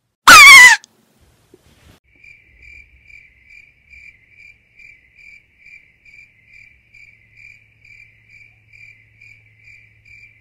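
A sudden, very loud scream lasting about half a second, its pitch sliding downward: a jump-scare shriek. After a short pause, a cricket chirps steadily, about two to three chirps a second.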